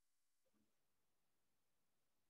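Near silence: essentially no sound.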